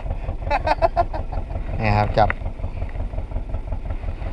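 A fishing boat's engine idling with a steady low, even thudding, and a few short clicks about half a second in.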